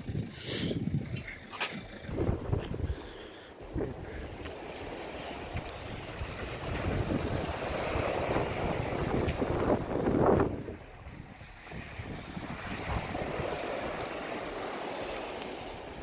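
Wind buffeting the microphone over the wash of surf on a shingle beach. The noise swells to its loudest about ten seconds in, then drops away.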